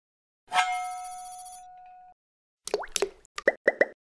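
Logo-animation sound effects: a bright chime struck about half a second in that rings and fades over about a second and a half, then a quick run of short pops, several with a quick upward glide in pitch.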